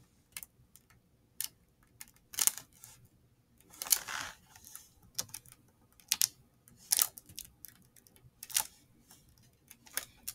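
Hands rolling and pressing a sheet of honeycomb beeswax on a wooden table: irregular light clicks and taps, about one a second, with a short rustle of the wax sheet near the middle.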